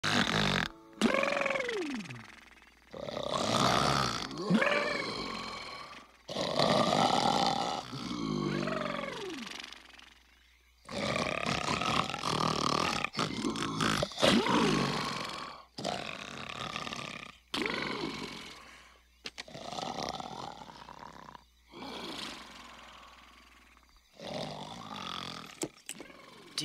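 Loud, exaggerated cartoon snoring from two sleeping characters, a dog-like cartoon figure and a Bigfoot. The snores come every couple of seconds with short gaps between them, and several end in a falling, whistling tone.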